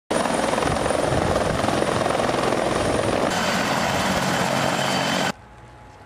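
Police helicopter flying close by, its rotor and engines running loud and steady. The noise cuts off abruptly about five seconds in, leaving only faint background sound.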